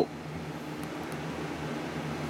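Steady low hum with a faint hiss, and two faint ticks about a second in.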